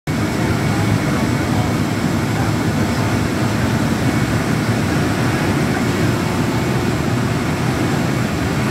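Steady cabin noise inside a Boeing 767-200ER in flight on approach: the low rumble of the engines and airflow over the fuselage, with a faint steady high whine above it.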